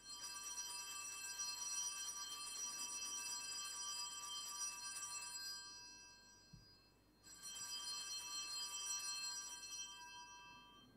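Altar bells rung at the elevation of the chalice after the consecration, a bright, shimmering ringing. One ringing lasts about five and a half seconds and dies away. A second ringing starts about seven seconds in and fades near the end.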